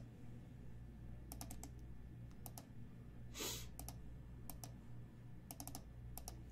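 Faint computer mouse and keyboard clicks, in small clusters of two to four every second or so, while a list is copied and pasted into a spreadsheet. A short soft rush of noise sounds about midway.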